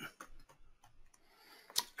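Light, scattered computer keyboard keystrokes, then a sharper single click near the end, typical of a mouse button.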